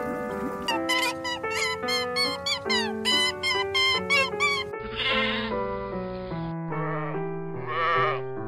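Background music, with sheep bleating several times in the second half.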